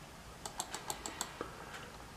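Faint computer keyboard key taps, about eight quick irregular clicks over a second and a half, pressed to scroll a web page down.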